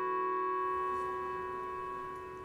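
Background music: a held chord of steady sustained tones that slowly fades away.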